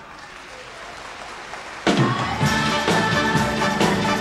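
Audience applause as the song ends. About two seconds in, it is cut across by the orchestra suddenly striking up loud music with a regular beat.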